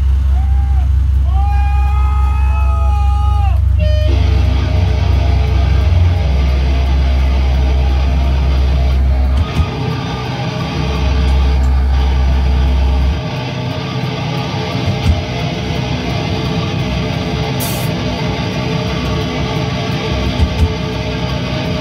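Live heavy metal band on amplified guitars and bass: a loud, sustained low bass drone with high wavering tones over it at first. About four seconds in, a dense wall of distorted guitar comes in. The low drone breaks off briefly around halfway and stops a few seconds later while the guitars carry on.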